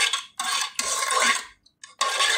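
A metal teaspoon scraping and scooping against a dish, three short scrapes, while adding sugar to the pot; it goes quiet briefly near the end.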